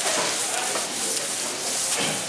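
Whiteboard duster rubbing across a whiteboard, wiping off marker drawings: a steady dry scrubbing noise.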